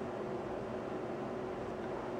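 Steady background hiss with a faint low hum and no distinct sounds: room tone.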